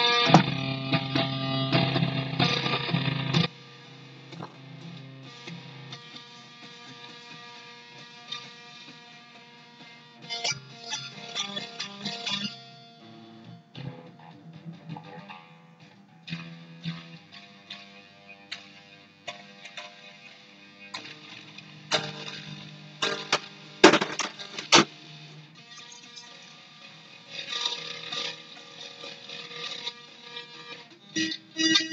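Electric guitar played through effects with some distortion. A loud ringing chord passage lasts for the first few seconds, then drops to quieter, sparse picked notes, broken by short louder flurries of strums.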